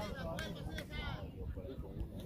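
Faint voices of people talking some way off, over a steady low rumble of wind on the microphone.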